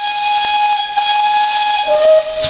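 Steam locomotive whistle sounding one long steady blast over a hiss of steam, dropping to a lower note right at the end.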